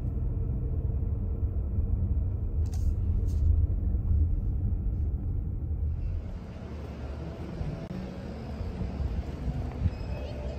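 Car cabin noise while driving: a steady low rumble of engine and tyres on the road. About six seconds in, the sound thins to a lighter road hiss with less rumble.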